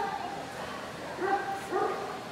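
Dogs yipping and barking in an indoor dog-show hall, with two short yips a little after a second in, over the steady murmur of people talking.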